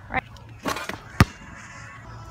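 A brief scuffing rustle, then a single sharp knock about a second in, the loudest sound here, without ringing after it.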